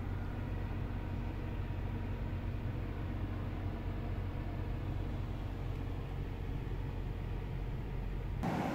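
Steady low hum with a faint hiss inside the cabin of a 2017 Mitsubishi Outlander, its ignition on and climate fan running.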